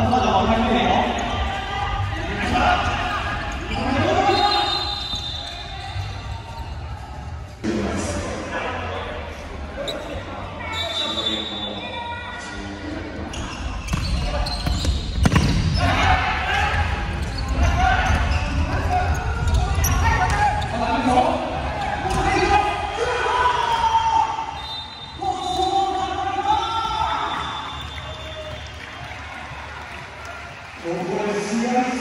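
Live sound of indoor futsal play in a large, echoing sports hall: players' shouts and calls, the ball being kicked and bouncing on the wooden court, and a few short high squeaks from shoes on the floor.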